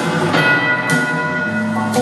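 Live rock band playing an instrumental passage, with a bell struck about a third of a second in and ringing on over the band.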